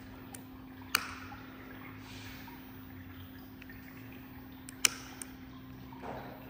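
Two sharp clicks, about a second in and near the end, with a few fainter ticks, over a steady low hum.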